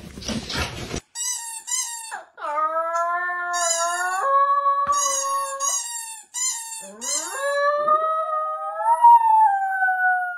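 Two small curly-coated dogs howling together: a few short yips, then long drawn-out howls that rise and fall in pitch and overlap as the two voices join in. A second of rustling comes first.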